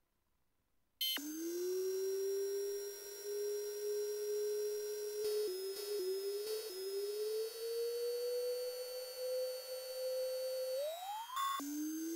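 Near silence for about a second, then a single electronic synthesizer tone comes in suddenly and slides slowly upward in pitch, with a few brief breaks in the middle. Near the end it sweeps quickly up, then drops low and begins rising again.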